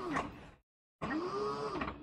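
Brushless hub-motor wheel driven by a VESC controller, whining up and then down in pitch twice as it speeds up and slows down while it replays recorded CAN bus velocity commands.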